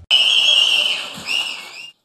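A loud high whistle held steady for about a second, then a second, shorter whistle that bends up and down near the end, over a faint hiss.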